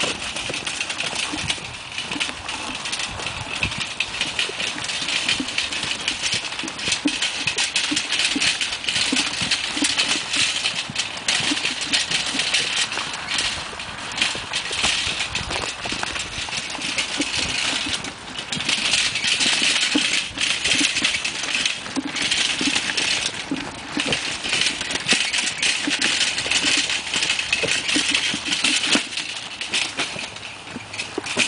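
Steel-mesh garden wagon loaded with empty plastic buckets, rattling and clattering without a break as it is pulled over frozen, bumpy ground.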